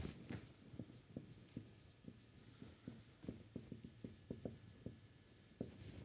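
Marker pen writing on a whiteboard: faint, irregular short strokes and taps, a few each second, as letters are drawn.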